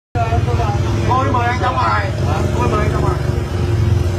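A motor vehicle's engine running with a steady low hum. People's raised voices over it in the first few seconds.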